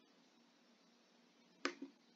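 Near silence, then a sharp click and a softer one right after it, about a second and a half in: a computer mouse button pressed and released.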